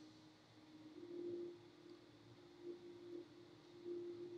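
Near silence with a faint, steady low hum that swells slightly about a second in.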